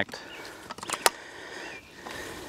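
A few sharp metallic clicks about a second in as the folding kayak cart's bunk arms and spring-button joints are handled and folded, with faint bird chirps behind.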